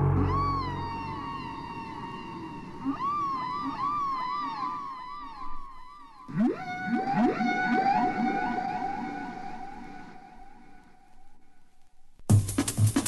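Beatless electronic music passage from a jungle/drum and bass track. A low sustained pad fades out over the first few seconds under wavering, swooping synth tones. About six seconds in, several quick upward glides settle into a held tone that slowly fades.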